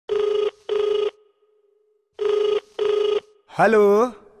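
Telephone ringing: a steady electronic ring tone in the double-ring cadence, two short rings close together, heard twice. A man's voice says "hello" near the end.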